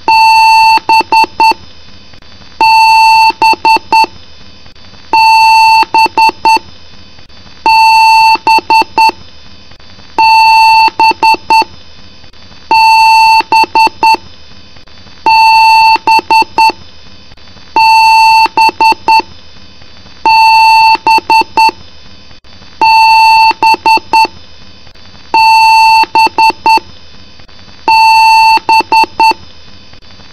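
Computer BIOS beeps on a tone of just under 1 kHz, in a repeating code: one long beep followed by a quick run of short beeps, over and over about every two and a half seconds.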